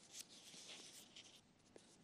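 Near silence, with faint, short, scratchy rustles in the first second and a half.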